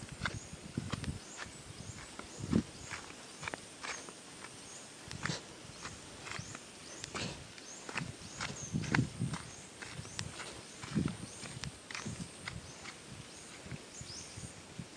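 Footsteps on a dry dirt path, with irregular crisp clicks and soft thuds, over a steady thin high-pitched tone.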